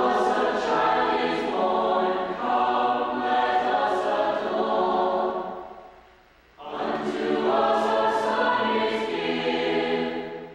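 Mixed choir of men's and women's voices singing in four parts, an English arrangement of a Christmas plainchant. One phrase fades out about five and a half seconds in, and after a short breath the choir comes in again with the next phrase.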